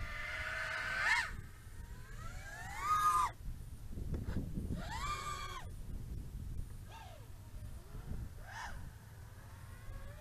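HGLRC Sector 5 V3 FPV quadcopter's motors on a 5S battery, heard from a distance, whining in a series of throttle bursts. Each burst rises or arches in pitch, and one cuts off sharply about three seconds in.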